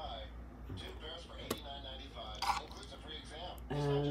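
A metal spoon scraping and clinking against a skillet while scooping cooked ground meat, with two sharp clinks about one and a half and two and a half seconds in.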